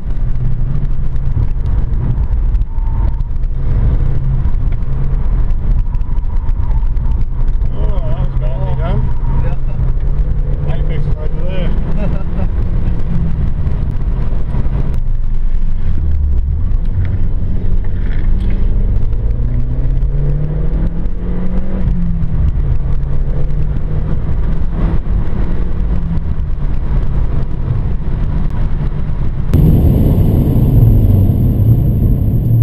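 VW Polo engine heard from inside the cabin during a hard track lap, its revs holding and shifting through the gears. About halfway through the engine note drops sharply, then climbs steadily for several seconds as the car pulls out of a corner, over steady road and tyre noise.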